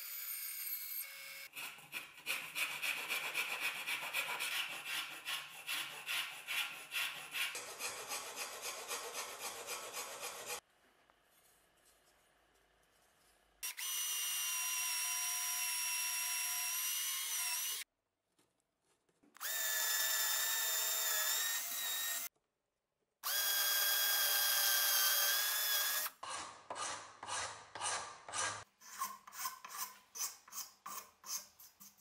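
A string of woodworking sounds on an ash handle blank. It starts with a band saw cutting briefly, followed by several seconds of rhythmic scraping strokes. After a short quiet gap an electric drill bores into the wood in three steady runs, and near the end come hand-file strokes on the wooden handle.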